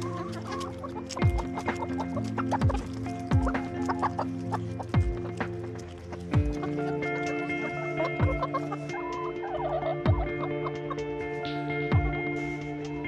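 A mixed flock of backyard hens clucking and pecking as they crowd around food held in a hand, over background music with held notes and a deep, regular drum beat.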